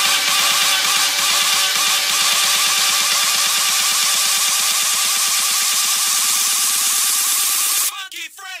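Progressive house music from a DJ mix, a dense track with almost no bass and a fast repeating pulse. It cuts off suddenly at the very end.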